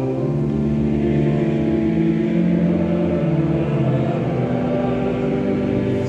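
A slow church hymn: voices singing over a pipe organ, long held notes that move to a new pitch every second or two.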